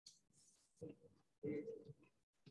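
A bird cooing faintly: two short low calls, one about a second in and a longer one at about a second and a half.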